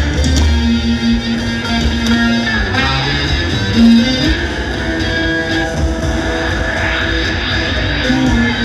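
Live instrumental music: an electric ukulele played through a chain of effects pedals, holding long sustained notes, with drums.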